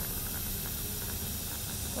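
Dental suction running: a steady hiss over a low rumble.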